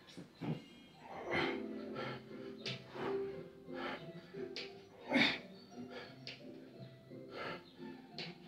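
Music from a children's video playing on a TV in the room, with held notes throughout. Over it come short, hard breaths of a man exercising, roughly one a second.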